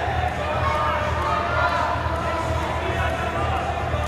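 Crowd of spectators in a sports hall talking and shouting over one another: a steady din of many voices with no single voice standing out.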